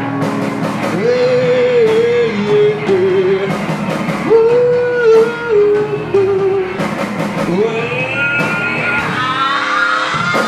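Hard rock band playing live: electric guitars, bass guitar and drum kit, with a lead melody in two long phrases of held notes that waver with vibrato. A higher line rises in near the end.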